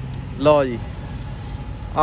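A steady low engine hum runs under the window, with a short spoken phrase about half a second in.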